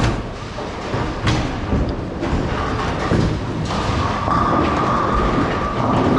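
Bowling alley din: bowling balls rolling down the lanes and pinsetter machinery rumbling, with a couple of sharp knocks early on. A steady machine whine comes in about halfway.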